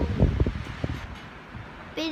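Electric fans running, their air buffeting the microphone with low rumbling thumps for about the first second, then a quieter steady whoosh.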